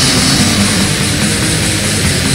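Black/death metal: a loud, unbroken wall of distorted electric guitars and drums, with no pause.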